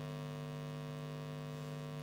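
A steady low electrical hum with a buzzy row of overtones, unchanging in level.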